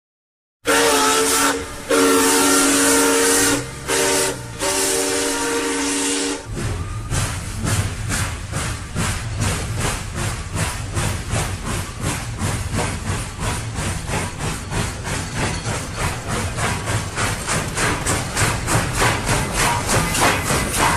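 Canadian Pacific diesel locomotive's air horn sounding a chord in four blasts, long, long, short, long, the standard level-crossing signal. The train then runs past with a low rumble and a fast, even clatter.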